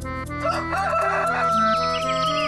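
A rooster crowing once: a long call that starts about half a second in, wavers, then holds a steady note that sags slightly at the end, over soft background music.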